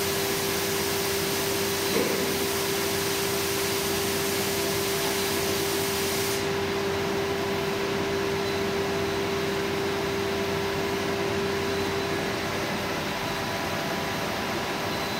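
Fully automatic pallet wrapper running as it wraps a pallet in stretch film: a steady mechanical hum with a hiss that cuts off about six seconds in. The hum fades out near the end, and there is a single short knock about two seconds in.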